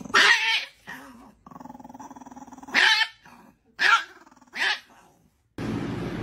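A small dog growling and yapping: a short high bark, a steady growl lasting about a second, then three more short high barks.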